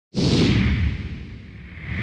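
Whoosh sound effects, a deep rumble with a hiss on top: the first starts suddenly and fades away over about a second, and a second one swells up near the end.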